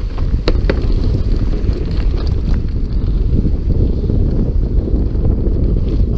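Wind buffeting the camera microphone with steady tyre rumble from a mountain bike running down a dirt forest trail, and a few sharp clicks near the start.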